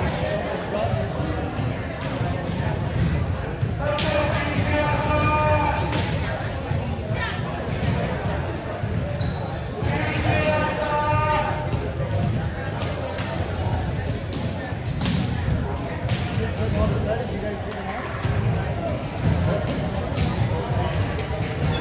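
Volleyballs being hit and bouncing on a hardwood gym floor, many sharp knocks ringing in a large reverberant hall, under steady voices and chatter. Two longer, pitched calls stand out about four and ten seconds in.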